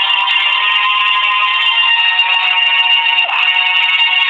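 Background music of sustained, high-pitched tones, held steady with no speech over it.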